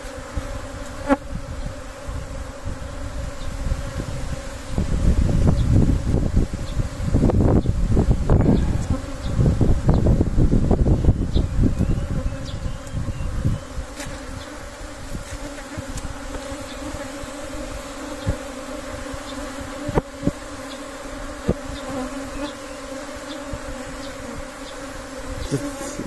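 A swarm of Asian honeybees buzzing as one steady, dense hum as they crowd into a mesh swarm-catching net. In the middle, from about five to thirteen seconds in, loud bursts of low rumbling cover the hum.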